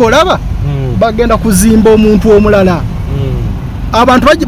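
A person talking inside a moving car, with the car's low engine and road noise running underneath.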